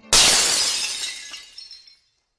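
A stack of dishes crashing and shattering: one sudden loud smash that dies away over about two seconds, with a few high ringing pieces near the end.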